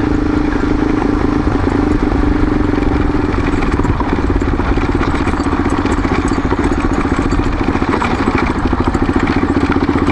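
Off-road vehicle engine running steadily as it drives along a gravel road, with rumbling road noise underneath.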